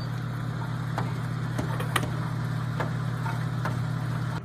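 Bingo ball blower machine running: a steady motor hum, with plastic bingo balls clicking and knocking as the air tumbles them, one sharper knock about two seconds in.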